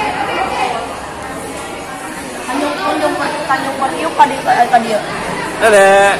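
Indistinct chatter of several people talking in a large, echoing tiled hall, with one voice rising louder near the end.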